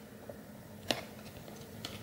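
Faint handling of a stack of paper trading cards, a light shuffling scratch with one sharp click about a second in.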